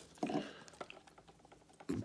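Faint handling sounds from gloved hands working the vacuum's rubber hose: a short scrape about a quarter of a second in and a few faint clicks near the middle, otherwise almost quiet.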